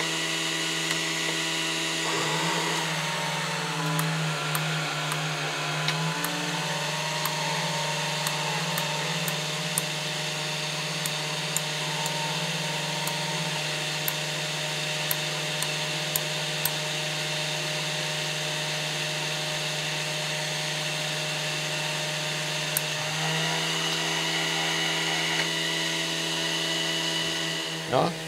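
Steady motor hum and whine from the FuG 16/17 radio set's rotary converter (Umformer) running. Its pitch pattern shifts about two and a half seconds in and shifts back a few seconds before the end, as the set is switched over to sending its automatic direction-finding call code and then back to normal. Faint ticks sound through the first half.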